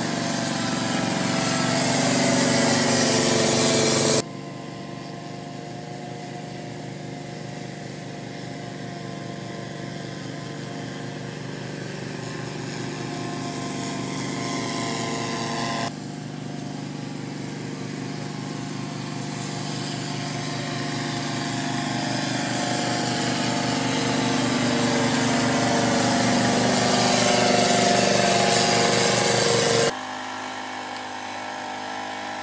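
Small engine of a truck-mounted mosquito fogger running steadily, growing louder as the truck approaches. The sound drops abruptly twice, about four and sixteen seconds in, then builds again.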